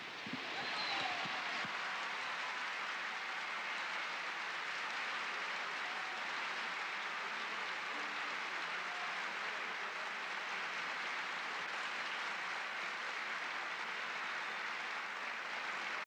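A large audience applauding steadily, starting as a song ends and building over the first second before holding level.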